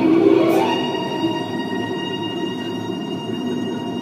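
Steady rumble inside a Disneyland Submarine Voyage submarine cabin, with several held high tones of the ride's soundtrack music over it. A voice fades out about half a second in.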